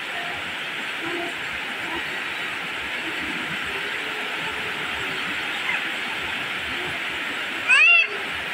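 Steady rain falling on leaves and wet ground, an even hiss. Near the end a brief, loud, high-pitched cry rises and falls over it.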